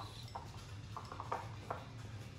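Faint, light taps of a thin wooden digging stick against the side of a clear cup of water as it is dipped and stirred, a handful of separate clicks.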